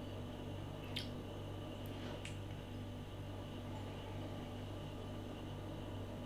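Quiet room tone with a steady low electrical hum, broken by two faint short clicks about one second and two seconds in.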